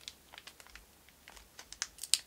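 Fingers picking and peeling at the plastic wrapping of a 2.5-inch SSD to open it, making faint scattered crackles and clicks that come more often toward the end.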